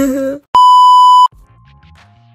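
A short laugh, then a single loud, steady electronic beep lasting under a second, an edited-in bleep sound effect, followed by faint background music.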